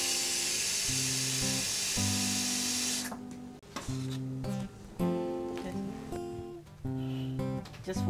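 Tap water running hard into a plastic washbasin in a kitchen sink, cutting off about three seconds in, under gentle acoustic guitar music that plays throughout.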